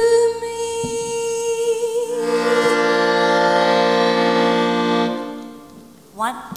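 A female singing voice holds one long note with a slight vibrato. About two seconds in, a sustained piano-accordion chord joins underneath. Both fade away about five seconds in.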